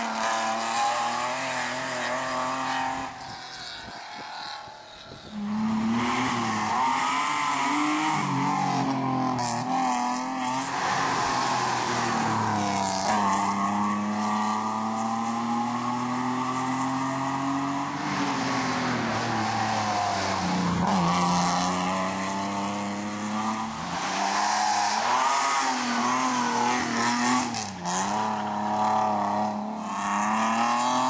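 Mercedes-Benz rally car's engine revving hard under load. Its pitch climbs and drops back again and again as it is worked through the gears. The sound drops away briefly about four seconds in.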